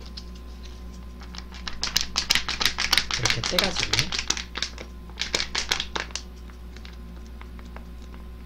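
Thin plastic seasoning packet crinkling and crackling in two quick spells as it is shaken to get it off a hand that it clings to.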